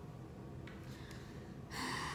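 A person's short, sharp intake of breath near the end, otherwise faint room noise.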